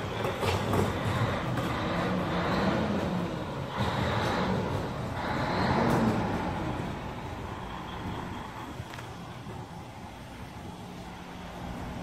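Vehicle engine noise, louder over the first six seconds, then settling into a quieter, steady low hum.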